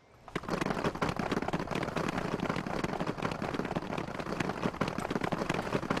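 A group of soldiers applauding: dense, steady clapping from many hands that starts suddenly a moment in.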